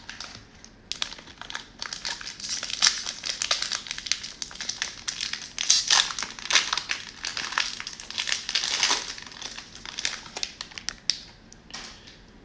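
Plastic wrapper of a 2021 Donruss football card cello pack crinkling as it is opened by hand: a dense run of crackles from about a second in until shortly before the end.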